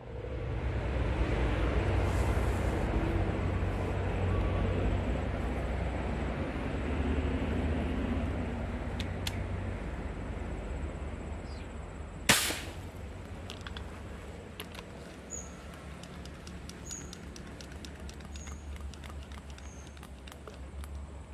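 A single sharp shot from a scoped air rifle, about twelve seconds in and the loudest sound, over a steady low outdoor rush. A few faint clicks and short high chirps follow later.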